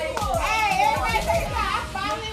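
Several women's voices calling out and singing along over party music with a deep bass beat whose low notes drop in pitch.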